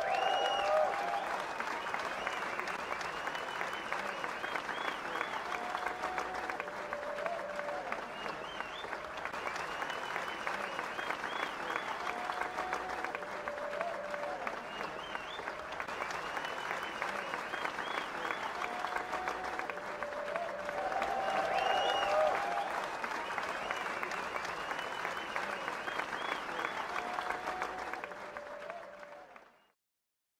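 Audience applause with cheering and whoops, steady throughout and fading out near the end.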